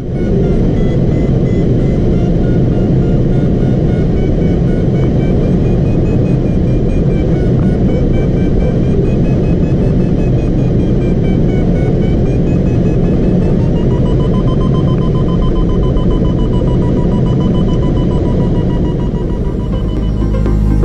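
Steady airflow noise in a glider cockpit, with a glider variometer's wavering electronic tone over it. About two-thirds of the way through, the tone steps up in pitch, a sign of a stronger climb in the thermal.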